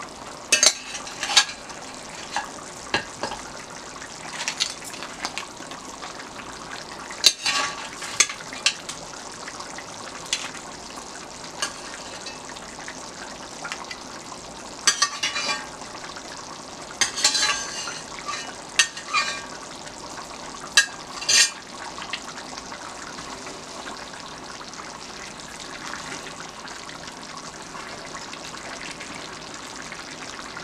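A large metal pot of eggplant sauce simmering with a steady bubbling hiss, while meat is added and stirred in with a spoon: scattered knocks of the spoon against the pot and splashes through the first twenty seconds or so, then only the simmer.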